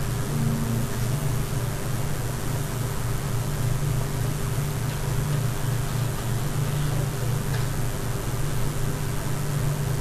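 Steady low hum with an even hiss underneath, the background noise of the recording; no speech.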